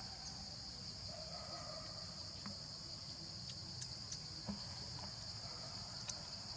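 Steady, high-pitched chorus of insects, a continuous drone with no break, with a few faint clicks scattered through it.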